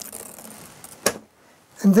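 Cork roadbed strip rustling and scraping as a hand presses it down against the foam board, with one sharp click about a second in.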